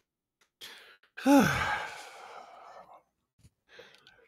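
A man's sigh: a short voiced groan falling in pitch that trails off into a breathy exhale lasting under two seconds, after a faint intake of breath.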